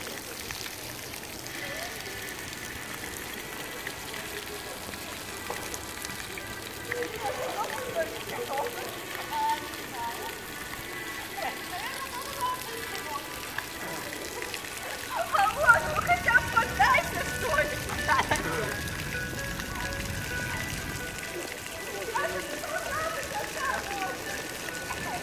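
Water jets of a ground-level pavement fountain splashing onto wet tiles, a steady hiss, with people's voices and music in the background. The voices grow louder for a few seconds past the middle.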